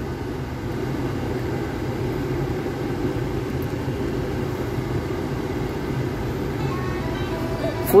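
Steady low hum and hiss inside a stationary car's cabin, the car idling. Music from the dashboard head unit starts faintly near the end.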